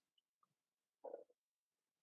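Near silence on a video call, with one faint, short sound about a second in.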